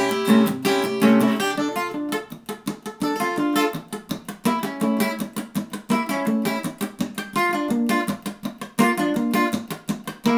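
Acoustic guitar playing an instrumental passage, a quick, steady rhythm of strummed and picked chords.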